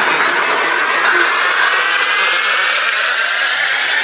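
Psytrance build-up from a DJ set: a rising white-noise sweep with several whistling tones gliding steadily upward, the bass and kick drum dropped out.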